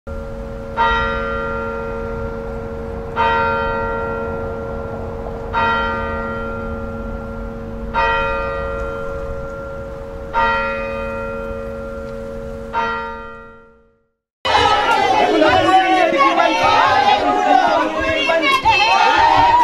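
A church bell tolling six times, a stroke about every two and a half seconds, each ringing on and fading away before the next. After the last one dies out there is a brief silence, then a crowd of people talking and calling out.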